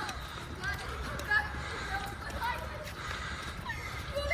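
Indistinct chatter from a group of people walking together, with footsteps on a concrete path.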